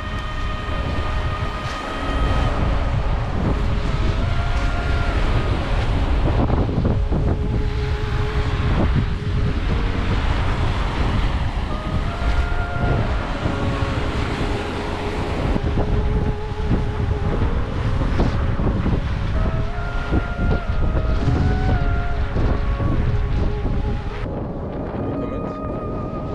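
Wind buffeting the microphone over surf washing onto the shore, with a slow melody of background music underneath.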